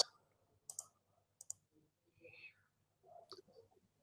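Near silence with a few faint clicks: a pair under a second in, another pair around a second and a half, and one near the end.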